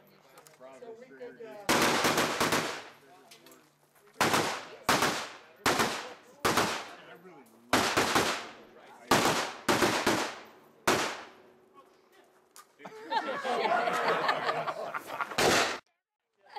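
Rifle fire on a shooting-match stage: about fifteen shots over roughly nine seconds, opening with a quick string of several shots and continuing with single shots half a second to a second apart, each followed by a short echo. Near the end, a few seconds of people talking.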